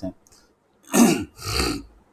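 A man coughing twice to clear his throat: two short coughs, about a second in and half a second apart.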